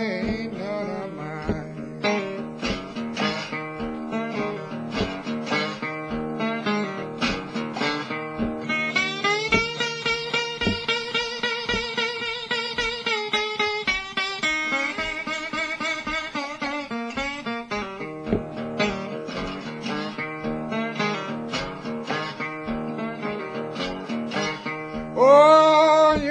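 Slide guitar playing a hill-country blues instrumental break: picked slide notes over a steady low beat, with long wavering held notes in the middle. A singing voice comes back in near the end.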